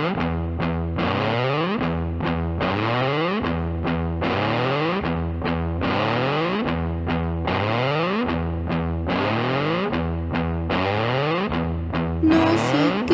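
Rock music led by distorted electric guitar through a sweeping effect, playing a repeated strummed chord figure over steady low bass notes, with no vocals.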